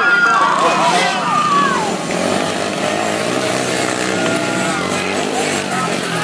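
Spectators shouting and calling out for the first couple of seconds, then the engines of small youth dirt bikes running and revving through the rest.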